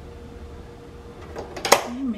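A low steady hum, then a brief sharp scrape and knock near the end as a spatula works through pasta in a metal pot.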